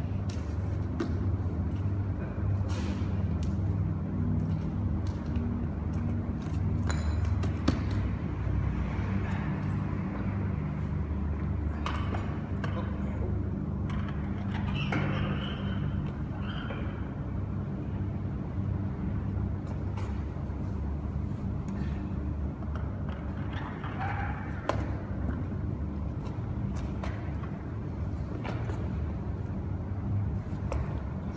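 Weight plates being loaded onto a hanging barbell: scattered metallic clanks and knocks as the plates slide onto the bar sleeves, the sharpest about eight seconds in, over a steady low hum.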